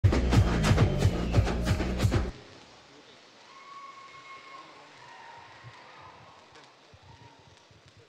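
Loud music with a heavy, regular beat that cuts off abruptly about two seconds in, leaving only faint background noise.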